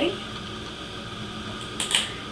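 Room tone: a steady low electrical hum under a faint hiss, with one short hissy sound near the end.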